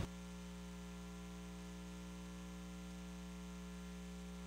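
Steady electrical hum on the recording: a low, unchanging tone with a ladder of overtones and a faint hiss.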